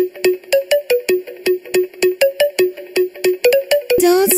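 Dubstep track in a stripped-down passage of short, repeated synth notes, about five a second, mostly on one pitch with a few higher notes mixed in.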